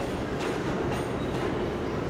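New York City subway train running along elevated steel track, a steady rolling noise of wheels on rails.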